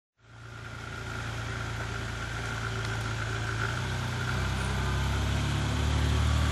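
Dodge Dakota pickup's engine running steadily at low revs as the 4x4 crawls up a slippery dirt hill, growing gradually louder.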